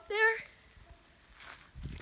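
A voice speaks one short word, then faint outdoor quiet; near the end, low thuds and rustling begin as the camera holder breaks into a run.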